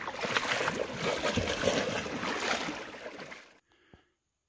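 Splashing steps wading through a shallow, rocky river, over the steady rush of the stream. The sound cuts off suddenly near the end.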